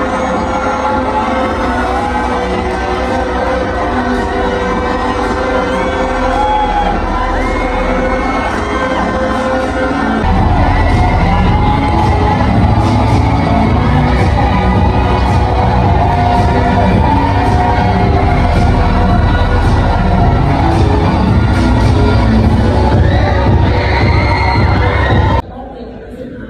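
Loud music over a ballroom sound system with a crowd cheering and shrieking over it. A heavy bass beat comes in about ten seconds in, and the sound drops off abruptly near the end.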